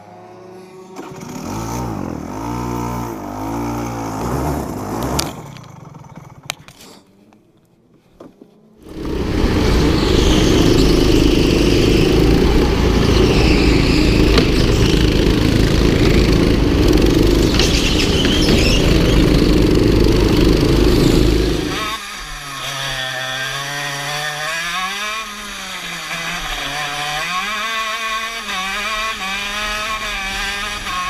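Go-kart engines heard onboard, in three stretches. First a kart engine revs up and down, then fades almost away. About nine seconds in a loud, steady engine noise takes over, and about twenty-two seconds in it gives way to a kart engine whose pitch rises and falls as it accelerates and slows through corners.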